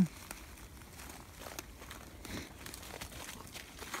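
Faint rustling and a few small clicks of hands working at blue plastic maple-sap mainline tubing while a gasket is fitted into a hole drilled in it.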